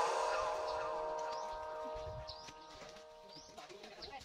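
The held notes of a song fade out, and faint bird chirps, short and rising, repeat about once a second.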